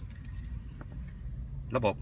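Faint metallic jingle of a car key being handled in the first half-second, over a steady low background hum.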